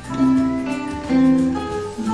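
Two classical guitars playing a slow melody, with a new note struck about every second and each note left to ring.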